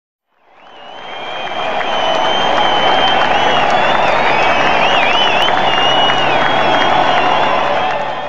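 Crowd cheering and applauding with shrill whistles, fading in over the first couple of seconds and starting to fade out near the end.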